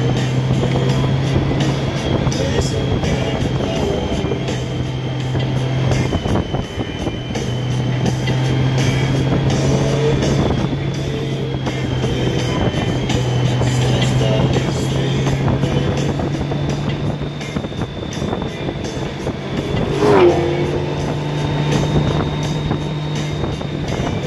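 Touring motorcycle running along a twisty road, its engine note steady but stepping down and back up several times as the throttle changes through the curves, over a constant rush of wind and road noise.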